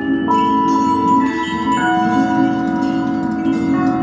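Free-improvised live music from a keyboard, electric guitar and drum trio. Sustained, bell-like electronic tones hold and step to new pitches every second or so, under scattered cymbal and drum strokes.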